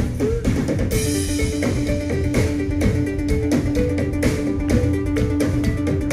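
A live rock band playing an instrumental passage with no vocals: electric guitar, bass guitar, drum kit and keyboard synthesizer over a steady drum beat and a repeating riff of short notes. A long held note comes in about a second in.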